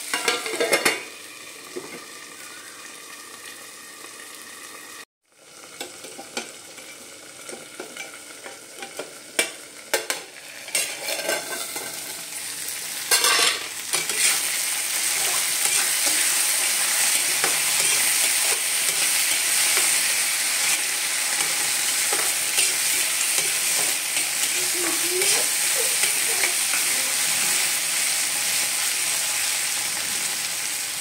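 Grains frying in a kadai on a gas stove, stirred with a metal slotted spatula that clicks and scrapes against the pan. About fourteen seconds in the sizzle turns loud and steady; a brief cut to silence falls about five seconds in.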